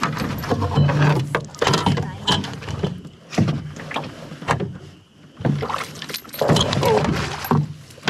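Knocks and clatter against an aluminum canoe as a long-handled landing net is grabbed and swung out over the side to land a hooked trout. Sharp strikes come irregularly throughout, with brief vocal sounds among them.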